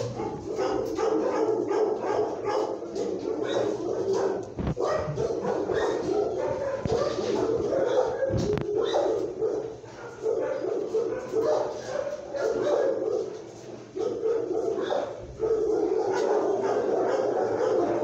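Dogs barking and yipping steadily in an animal-shelter kennel, with a couple of short lulls.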